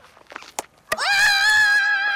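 Two sharp knocks of a cricket ball around the middle, then a cricket fielder's loud, high-pitched shouted appeal for a wicket, one long call held steady on one note.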